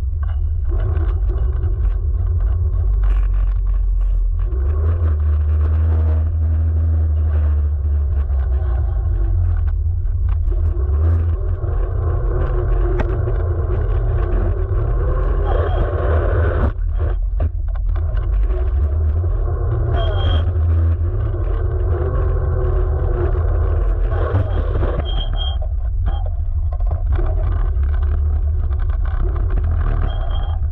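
Electric scooter riding over coarse asphalt, heard from a camera mounted low beside the rear wheel. There is a steady, loud low rumble from the tyre on the road surface.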